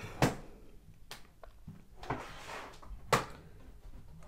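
Handling of a tablet's detachable keyboard and fabric folio cover on a wooden tabletop: a few sharp clicks, the loudest about three seconds in, with a brief rustle of the cover between them.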